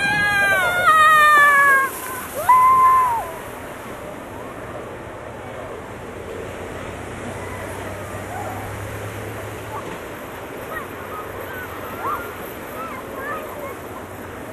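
Children squealing in high, gliding voices in the first few seconds, with a short high cry about two and a half seconds in. After that comes a steady rushing hiss with faint, distant children's calls.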